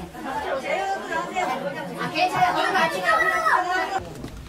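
Overlapping voices of several people talking at once, with no clear single speaker.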